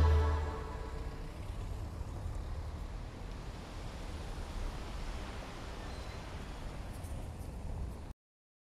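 The music stops in the first half second, leaving a faint, steady low rumble of background ambience that cuts off suddenly at the end.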